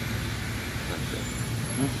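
Steady low hum of an idling vehicle engine under an even wash of outdoor background noise.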